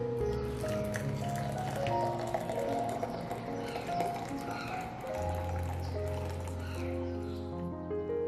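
Soft piano background music, with a stream of hot water pouring and splashing into a glass jug beneath it.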